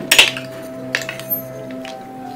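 Background music with sustained notes, and metal cutlery clinking against a dinner plate: one sharp clink just after the start, the loudest sound, and lighter clicks about a second in.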